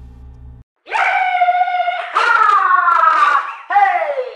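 Jazz music cuts off abruptly. After a short gap, a loud high-pitched voice gives two long held calls, the second sliding slowly down in pitch, then a short falling cry near the end.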